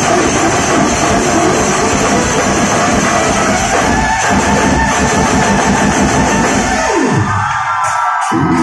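Loud live fusion band music with drums. Just before the end the bass falls away in a downward sweep and drops out for about a second, then the beat comes back in.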